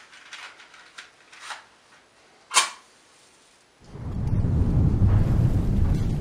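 A sharp click about two and a half seconds in, after a few fainter clicks, then a loud, deep explosion rumble that starts about four seconds in and holds steady.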